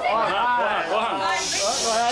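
People's voices talking, with a drawn-out hiss near the end.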